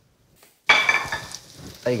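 Cherry tomatoes and onions sizzling in hot olive oil in a frying pan. The sizzle starts suddenly about two-thirds of a second in, loud at first, then settles to a steady lower hiss.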